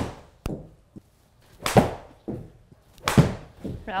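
Golf iron shots struck off a hitting mat into a simulator screen: two loud, sharp strikes about a second and a half apart, with fainter knocks between them.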